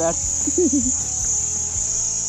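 Insects calling in one steady, high-pitched drone.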